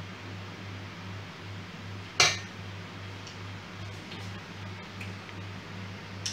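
A single sharp clink of a metal spoon against the batter bowl about two seconds in, as the cake batter is tasted, over a steady low hum.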